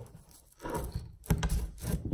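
Claw hammer levering on an Allen wrench hooked under a floor staple, prying the staple out of a wooden subfloor: metal scraping against metal and wood, in two short bursts with a few sharp clicks in the second, about a second and a half in.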